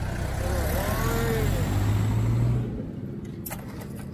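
A motor vehicle's engine running close by, a low rumble that drops away about two and a half seconds in.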